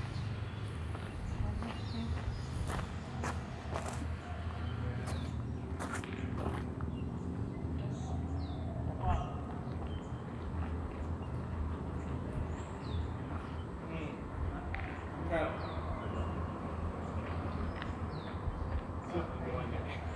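Footsteps on loose gravel, with scattered sharp clicks of stones over a steady low background rumble and faint indistinct voices.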